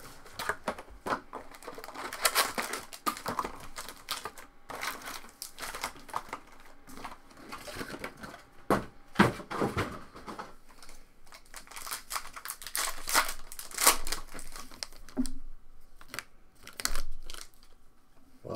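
Plastic wrapping and foil trading-card pack wrappers crinkling and rustling in irregular bursts as a new box of cards is opened and its packs are handled.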